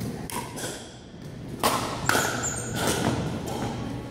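Pickleball rally in a gym: paddles striking the plastic ball and the ball bouncing on the wooden floor, about six sharp knocks at irregular spacing. The loudest come in the middle, and each knock echoes briefly in the hall.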